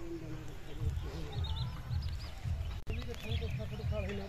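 Small birds chirping, a quick run of short arched calls about halfway through, over a steady low rumble.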